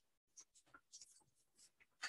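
Near silence, broken by a few faint, brief rustling ticks.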